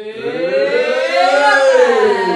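A group of voices holding one long, loud cheer together as a toast, rising in pitch and then falling away.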